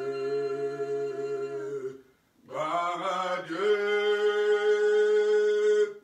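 A man singing a hymn unaccompanied, holding a long low note, pausing briefly for breath, then holding a higher note.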